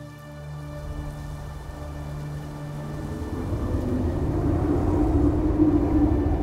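Film score and sound design: a low, thunder-like rumbling drone that swells steadily louder, with a rushing noise joining it after about three seconds.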